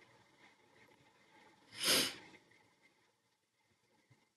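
A single short rush of breath from a person close to the microphone, about two seconds in, over faint background.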